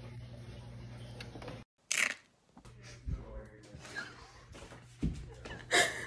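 A steady low room hum that cuts off abruptly, followed by phone-handling noise: scattered bumps, knocks and rustles as the recording phone is picked up and moved. A loud burst comes about two seconds in and another near the end.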